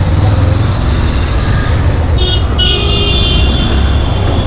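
Motorcycle running along a road, with a steady low rumble of engine and wind on the microphone. About two seconds in, a vehicle horn honks twice: a short toot, then a longer one of about a second.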